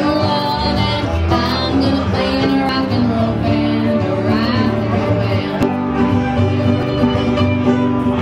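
Live acoustic string band playing a bluegrass-style country song: strummed acoustic guitar over upright bass, with other plucked strings, steady throughout.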